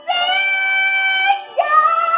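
A woman belting two long held notes of a song, the second scooping up into its note about one and a half seconds in.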